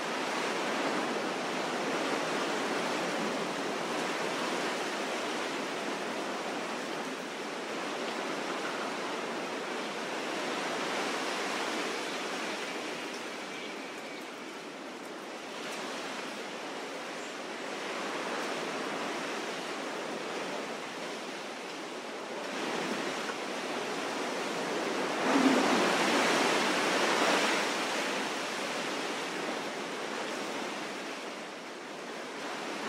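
Wind rushing through bare trees and over the microphone, swelling and easing in gusts, with the strongest gust near the end and a brief bump on the microphone about 25 seconds in.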